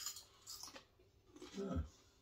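A sharp crack of a hand-cooked crisp right at the start, then a brief crunchy crackle about half a second in; a voice says 'yeah' near the end.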